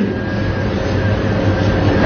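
Steady low rumble with a faint hiss and a thin, steady hum: background noise of the lecture recording in a pause between the speaker's phrases.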